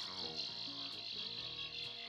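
Quiet passage of a chillout electronic track: a steady high-pitched shimmer with a few soft, held low notes under it.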